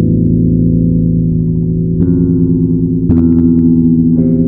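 Instrumental music of held low chords on electric guitar through effects, with a new chord struck about two seconds in and again about three seconds in.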